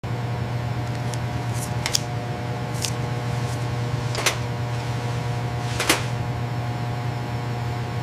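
Steady electrical hum of running lab equipment, with a low drone and several fixed higher tones, broken by several sharp clicks, three of them louder, around two, four and six seconds in.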